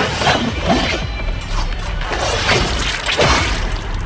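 Anime battle soundtrack: dramatic music with a steady deep bass under a dense layer of fight sound effects, with several crashing hits and whooshes.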